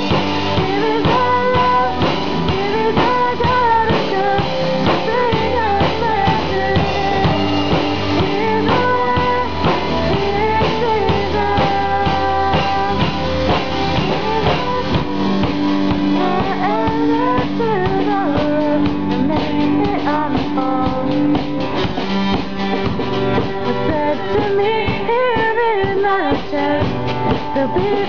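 A small band playing an instrumental passage: a violin carrying a gliding melody over guitar and a steady drum kit beat.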